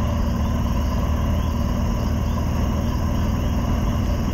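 A motorcycle engine runs steadily at cruising speed, with road noise from a rain-wet highway. Crickets chirp faintly underneath.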